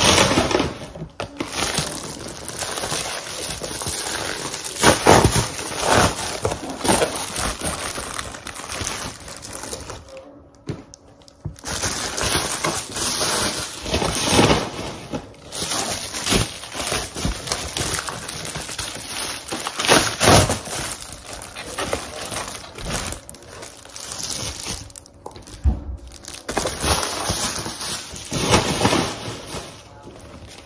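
Plastic and paper packaging crinkling and rustling in irregular bursts as it is torn open and handled, with a short lull about ten seconds in.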